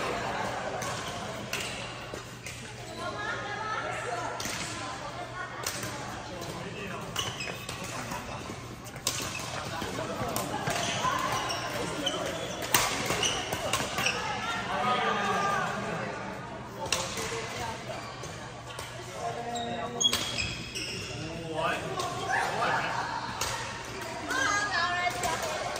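Badminton rackets striking a shuttlecock in a doubles rally, sharp irregular smacks a second or more apart, echoing in a large hall, with background voices from the surrounding courts.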